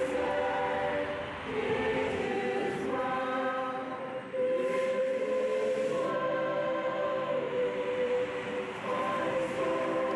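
Slow choral music: voices holding sustained chords that change every second or two.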